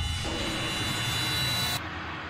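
A steady rushing noise with a few thin high ringing tones in it, swelling slightly and then cutting off suddenly near the end.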